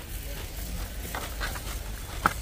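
Background ambience of a large warehouse store: a steady low hum under faint indistinct noise, with a few faint clicks a little past a second in.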